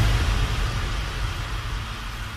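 Synthesized deep bass rumble under a wash of hiss, the slowly fading tail of a whoosh-and-hit intro sound effect.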